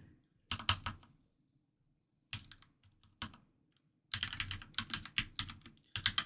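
Typing on a computer keyboard: a short burst of keystrokes, a few scattered keys, then a faster run of typing over the last two seconds.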